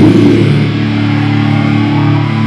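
Live metal band's electric guitar and bass ringing out on low held notes, loud and steady, as a shouted vocal line ends right at the start.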